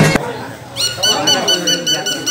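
Drum music cuts off abruptly just after the start. Then come people's voices and a high-pitched ringing tone that pulses rapidly, about seven times a second.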